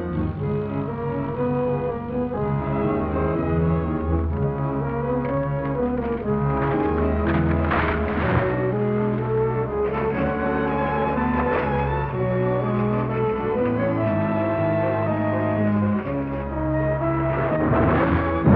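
Orchestral film score with brass prominent, the chords shifting every second or so, and a brief noisy swell about eight seconds in.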